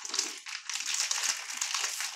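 Plastic vacuum-pack bag crinkling and rustling continuously as hands dig into it and pull sausage links out.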